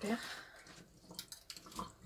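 Dishes being washed by hand in a sink: faint water sounds with a few light knocks and clinks in the second half.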